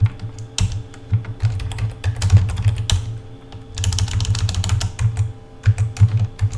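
Typing on a computer keyboard: quick runs of key clicks broken by short pauses, as a word is typed into a text box and erased.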